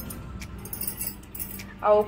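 Fresh coriander leaves and a hand in a stainless-steel mixer-grinder jar, making faint light clicks and rustles. A voice starts near the end.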